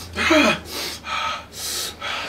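A man breathing hard in short, sharp gasps through an open mouth, about two a second, from the burn of very hot sauce.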